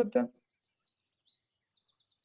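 Faint, high-pitched bird chirping: scattered short twitters that quicken into a rapid run of chirps near the end.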